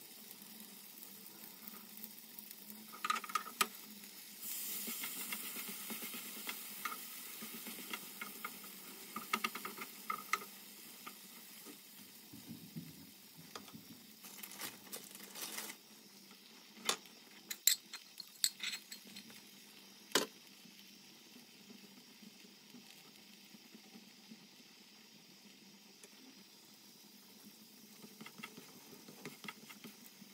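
A tortilla wrap sizzling on a hot ridged grill pan. The sizzle is strongest for several seconds early on and then dies down. Scattered clicks and knocks of a wooden spatula against the cookware cluster in the middle.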